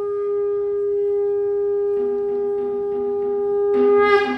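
Two curved horns blown as part of a Kandyan dance performance. One holds a long, steady note from the start, a second, lower note joins about halfway, and near the end the sound swells with a brighter, higher note.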